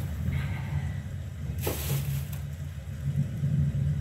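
Steady low background hum or rumble, with one short rustling hiss a little under two seconds in.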